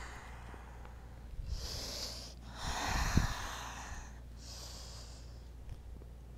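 A woman's breathing during a slow stretch: a short breath about a second and a half in, then a longer, louder breath with a soft low thump in it around the middle, and a fainter breath after.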